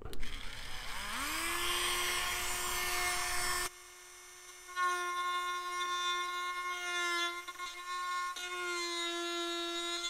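Small hand-held rotary tool spinning up about a second in to a steady high whine, then running with a drill bit used as a router to widen a slot in soft balsa wood. The whine dips quieter for about a second midway and wavers a few times as the bit cuts.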